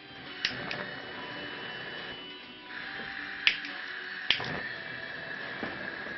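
Gas hissing steadily from a stovetop burner with its knob turned open, while it is being lit, with a few sharp clicks along the way.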